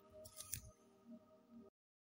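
Near silence: faint sustained background music tones with a couple of soft clicks about half a second in, then the sound cuts off completely near the end.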